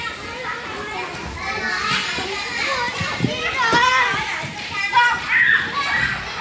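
Several young children's voices chattering and calling out at once, high-pitched and overlapping, the babble of children at play.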